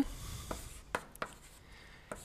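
Chalk writing on a blackboard: a short faint scratch of chalk on slate, then a few light clicks as the chalk taps the board.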